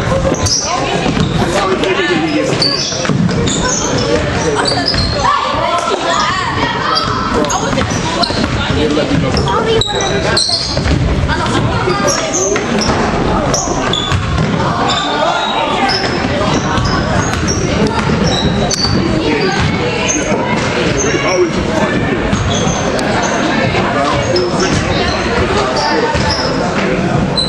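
Basketball game sounds echoing in a school gym: the ball bouncing on the hardwood floor, short high sneaker squeaks, and players, coaches and spectators calling out and talking throughout.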